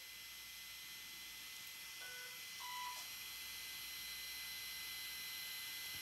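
Handheld dental curing light beeping twice about two seconds in, two short electronic tones with the second lower, over a faint steady hiss.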